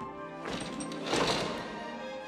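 Orchestral film underscore with held notes. About half a second in, a bright, hissing shimmer swells up and fades away after about a second.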